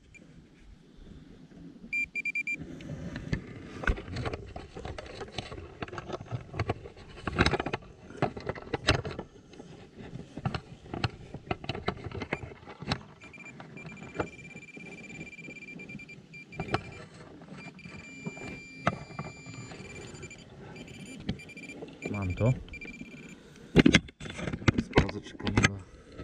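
Hand digging tool chopping and scraping into dry, hard meadow soil, with irregular knocks and rustles of earth and grass. A steady high electronic tone from a metal detector sounds briefly about two seconds in and again for several seconds from about the middle.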